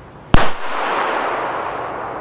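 Zena Match Cracker, a 1.2 g black-powder F2 firecracker, exploding with one very loud, sharp bang about a third of a second in, followed by a long echo that slowly dies away.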